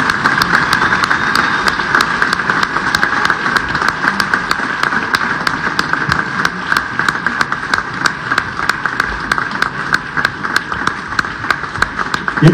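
A group of people applauding: steady clapping from many hands, with individual sharp claps standing out.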